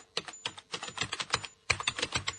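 Computer keyboard typing: a quick run of key clicks, pausing briefly about a second and a half in, then going on.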